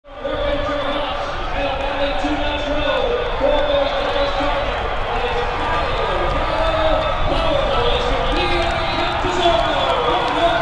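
A race announcer's voice over the track loudspeakers calling the finish of a turf horse race, with drawn-out, gliding words, over a steady low rumble of background noise.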